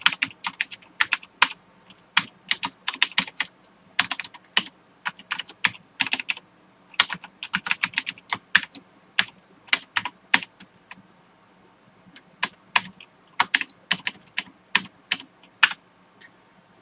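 Typing on a computer keyboard: irregular runs of keystroke clicks, with a pause of about a second roughly two-thirds of the way through.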